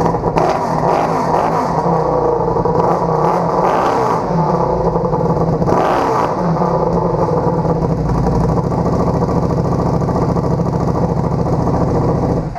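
Buell 1125R's Rotax-built liquid-cooled V-twin running on the stand after an oil change, with a few brief rises in revs about a second, four seconds and six seconds in, circulating its fresh oil.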